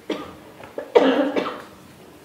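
A woman coughing: a short cough at the start, then a louder, longer one about a second in.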